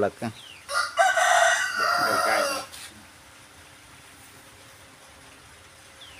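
A rooster crowing once: a single high, loud call of about two seconds, starting just under a second in.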